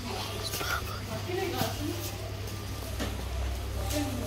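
Indistinct voices talking quietly in the background, over a steady low hum.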